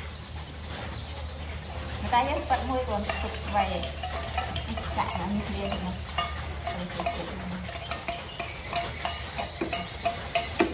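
Noodles being stirred and scooped in a metal pot with a wooden spatula: repeated short clinks and knocks of the utensil against the pot and a steel bowl. They begin a few seconds in and come faster in the second half, over a low steady hum.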